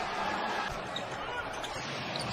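Low, steady court sound of an NBA game in a sparsely filled arena, with a basketball bouncing on the hardwood floor.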